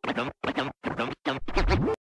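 DJ turntable scratching of a vocal sample, cut into five short choppy bursts with silent gaps between them. It ends with a rising pitch sweep over a low bass hit near the end.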